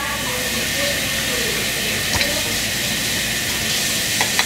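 A steady, even hiss at a constant level.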